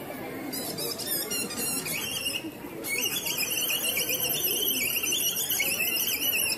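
Shrill, warbling whistle: a broken, fluttering stretch in the first half, then one long trilled blast through the second half, over the murmur of a crowd.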